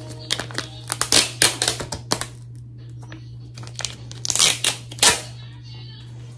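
Foil sachet crinkling as it is handled and a gel lip mask is drawn out of it, in two bursts of sharp crinkles, the louder one about four seconds in, over a steady low hum.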